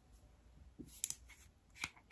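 Plastic cap of a small hair oil bottle being twisted open: a few faint clicks about a second in and another near the end.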